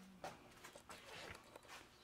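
Near silence: room tone with a few faint ticks and rustles.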